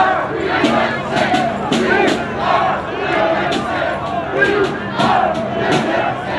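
A crowd of protesters shouting, many voices overlapping.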